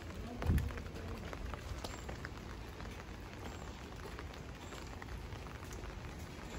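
Light rain falling: a steady hiss scattered with small drop ticks. A short, louder low sound comes about half a second in.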